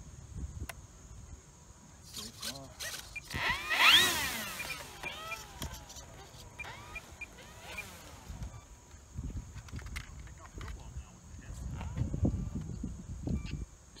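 Gusty wind buffeting the microphone, over a steady high insect drone. About four seconds in comes a louder, brief run of quick rising and falling pitched sweeps.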